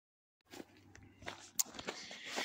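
Dead silence for about half a second, then faint scattered clicks and rustling over a low steady hum.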